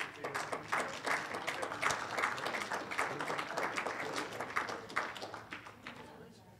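Audience applauding: many hands clapping irregularly, dying away near the end.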